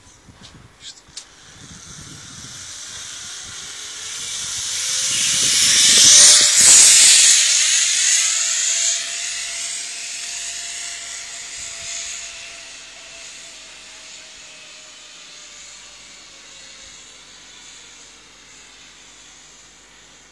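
Zip-line trolley running along a steel cable: a hissing whir with a faint whine that grows as it approaches, peaks about six seconds in, then fades slowly as the rider travels away down the line.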